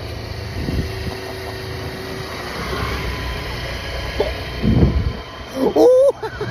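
Suzuki motor scooter under way, its engine running under a steady low rumble of riding noise. A short burst of voice comes just before the end.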